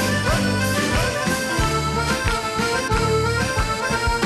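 Greek popular music: a band playing an instrumental passage with no voice, over a steady beat and a moving bass line.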